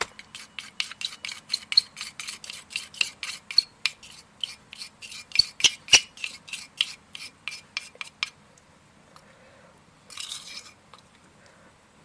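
Plastic spoon scraping and tapping against a mixing cup as thick dental alginate is scraped out into a smaller cup: quick strokes, about five a second, for about eight seconds, then they stop. A short soft rustle comes near the end.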